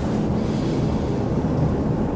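A steady, low rumbling noise with no distinct events.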